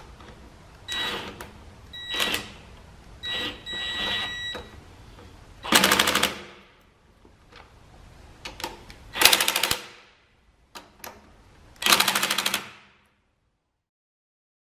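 Hand ratchet clicking in a series of short, rapid runs, with a faint high metallic ring in the first few, as fittings on the air cleaner are worked. The sound cuts off about a second before the end.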